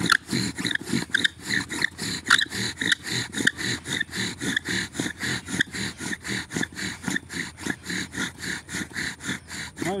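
Wooden spindle of a spring-pole string drill spinning in a fireboard notch, willow and incense cedar rubbing together, as a friction fire is worked. It makes a rhythmic wood-on-wood grinding at about four to five strokes a second, steady throughout.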